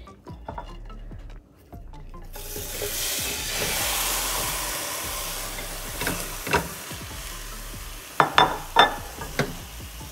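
Washed broccoli florets tipped into a hot stainless steel pan of melting butter, starting a sizzle about two seconds in that swells and then slowly eases off. Near the end come a few sharp clicks and knocks as the florets and the plate touch the pan.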